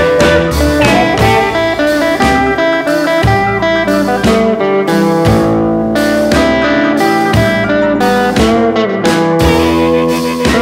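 Electric blues band playing an instrumental passage with guitar to the fore over a steady beat, without vocals.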